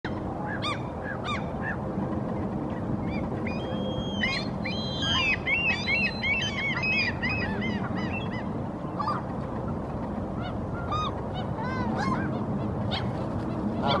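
Birds calling: many short, arched calls overlapping one another, busiest from about four to seven seconds in and louder again at the very end, over a steady low background noise.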